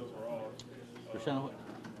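Brief, quiet murmured voice sounds, short and low, with pauses between them.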